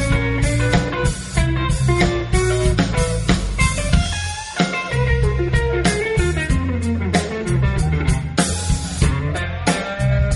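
Live blues-rock band playing an instrumental break: a lead electric guitar line with bent notes over bass and drums. The low end briefly drops away about four seconds in.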